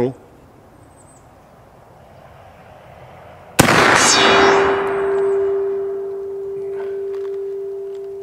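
A single shot from an original 1880s Remington Rolling Block .45-70 loaded with black powder, a sharp crack about three and a half seconds in with a long rolling echo. Half a second later a distant steel gong is hit and rings with one steady tone that fades slowly.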